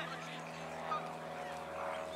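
Gulls calling in a few short squawks, one at the start and another about a second in, over a steady low hum.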